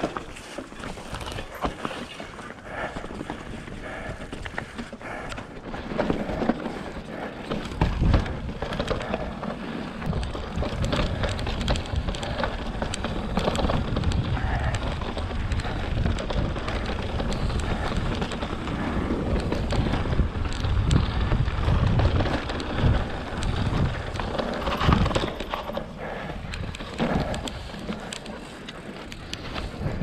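Full-suspension mountain bike (Fezzari La Sal Peak) riding over rough, wet slickrock: tyre noise on rock with frequent rattles and knocks from the bike over ledges and stones. A heavy low rumble runs through the middle stretch and eases near the end.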